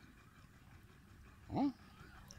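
Faint background, then a single short voiced call about one and a half seconds in, rising and then falling in pitch.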